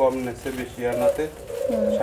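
Several doves cooing: low, repeated coos at slightly different pitches overlapping one another.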